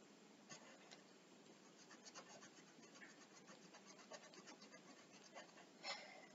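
Faint pencil strokes scratching on paper: a quick run of short strokes, about five a second, through the middle, with one louder scrape near the end.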